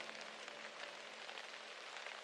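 Faint rain ambience: a steady patter of rain with the music faded out.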